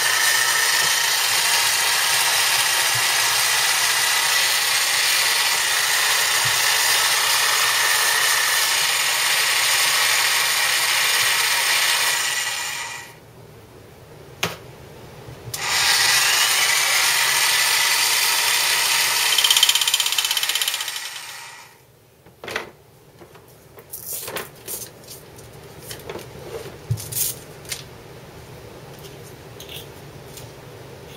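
A corded reciprocating saw runs at steady speed as a makeshift paint shaker, shaking a bottle of long-settled model paint strapped to its blade clamp to remix it. It runs for about twelve seconds, stops briefly, runs again for about six seconds and stops, and is followed by scattered clicks and handling rattles.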